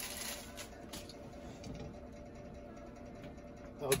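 Faint handling sounds in a truck cab: a few light clicks as a glitter knob is screwed onto a dash toggle switch, over a quiet steady background.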